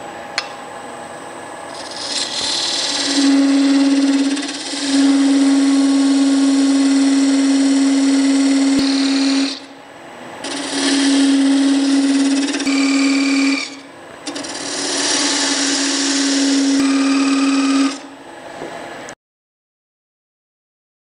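A narrow parting tool cutting into a wood spindle turning on a lathe: three cuts of a few seconds each, a hiss of shavings over a steady hum, with short quieter pauses between. The sound cuts off suddenly shortly before the end.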